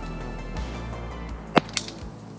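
Background synth music with held tones and a low bass line. A single sharp click cuts through it about one and a half seconds in.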